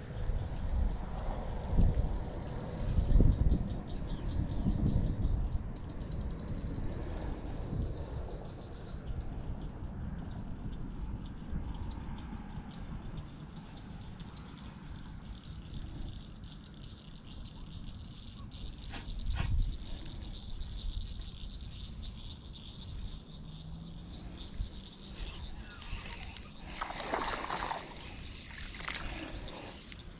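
Pondside outdoor ambience: low rumbling, loudest in the first few seconds, under a thin steady high-pitched drone, with two sharp clicks about two-thirds of the way in and a brief rustle near the end.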